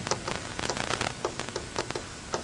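Irregular rapid taps and scratches of writing on a lecture board, several clicks a second.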